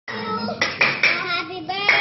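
Hands clapping, four sharp claps in an uneven rhythm, over voices singing.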